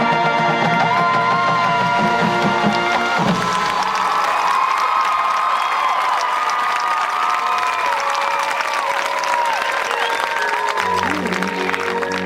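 A marching band's brass and percussion hold a loud final chord that cuts off about three seconds in. A crowd then cheers, claps and whoops. Soft, low sustained music comes in near the end.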